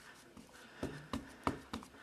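Four light taps in quick succession, starting about a second in, as a clear acrylic stamp block with a rubber border stamp is inked on an ink pad.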